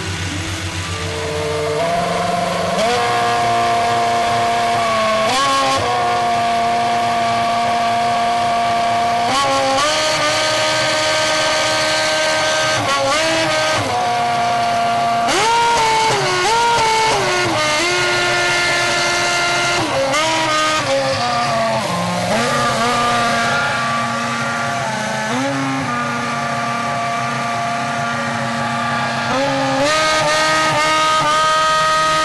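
Toyota Formula One car's engine fired with an external starter, then revved and held at a series of steady pitches, stepping up and down between them to play a tune.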